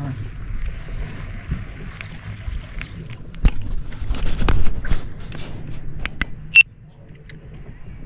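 Handling noise from the camera and fishing rod aboard a small boat: knocks and rubbing over a low rumble, loudest around three to five seconds in, then a single sharp click a little past six seconds.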